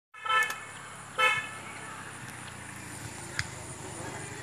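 Two short toots of a vehicle horn, the second shorter, followed by steady low background noise.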